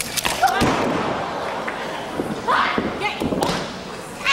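Wrestlers' bodies hitting the ring canvas after a dive off the top turnbuckle: a heavy thud about half a second in, then lighter thumps on the mat, with voices shouting over them.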